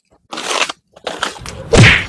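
Scratchy strokes of a broom on a bare dirt yard, then a thump near the end as a thrown sandal hits the sweeper.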